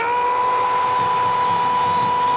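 A football TV commentator's long, drawn-out shout held on one high pitch, rising into it at the start: a goal call as the ball goes in. Faint crowd noise lies beneath.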